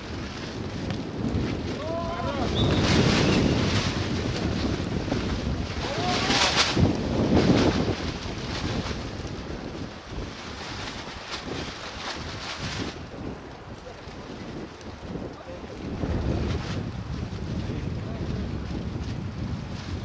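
Wind buffeting an outdoor microphone in a steady rush, swelling louder a few seconds in and again near the middle. Short shouts from players rise briefly over it.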